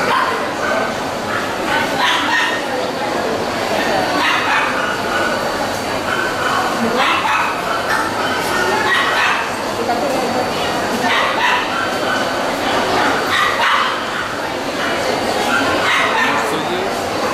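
A dog barking repeatedly, short sharp barks every second or two at an irregular pace, over a background of people talking.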